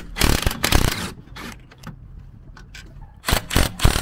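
Cordless DeWalt 20V brushless compact impact wrench hammering in short bursts as it backs out rusty seat-mounting bolts: a burst of about a second at the start, a brief one just after, and another near the end.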